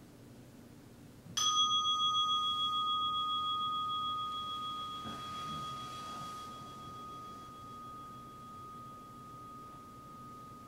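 A meditation bell struck once about a second in, ringing on with a clear, pure tone that wavers gently and fades slowly, marking the end of the sitting period. A soft rustle of cloth midway as the robed sitter bows forward.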